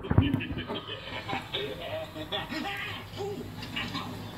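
Television audio playing in the room: voices and music from a TV programme over a steady low hum, with a few knocks of the phone being handled at the start.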